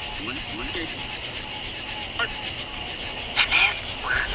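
Night insect chorus of crickets, a steady high-pitched trilling that holds through, with a few faint brief sounds mixed in.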